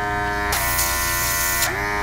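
Nail airbrush compressor running with a steady hum. About half a second in, a loud hiss of air through the airbrush starts and stops a second later, and the compressor's hum drops slightly in pitch while the air flows, then rises back.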